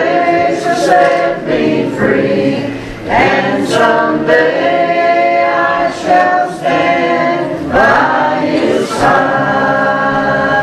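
A group of voices singing a church song together, with long held notes in phrases of about a second.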